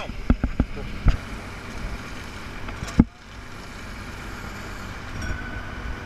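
Fire engine running steadily in the background, with a few dull knocks in the first second and one loud knock about three seconds in.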